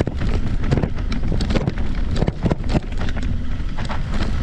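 Wind buffeting the microphone of a camera on an electric mountain bike riding a dirt trail, a steady low rumble. Many short clicks and rattles come from the bike and its knobby tyres as they go over the bumpy ground.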